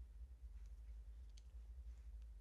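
Near silence: a steady low room hum with a few faint soft clicks, the clearest about midway.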